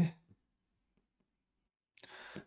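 Near silence in a small room, broken only by a few faint taps and rubs of writing on the board, after the last spoken word trails off at the very start.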